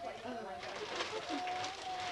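Indistinct voices of several people in a room, with a steady held tone beneath them and a burst of rustling in the middle.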